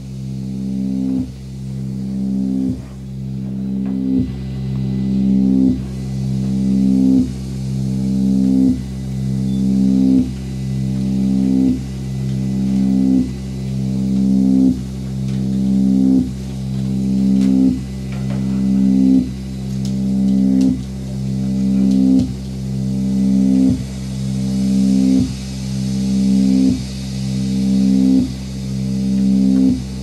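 Electronic music: a low, pitched synthesizer drone looping about every second and a half, each cycle swelling and then cutting off abruptly.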